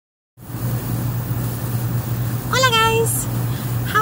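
Outdoor air-conditioning unit running close by with a steady low hum and rushing noise, really loud, starting about half a second in, with wind on the microphone.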